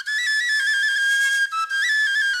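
Music: a solo flute playing a quick, high melody of short stepped notes, with no accompaniment.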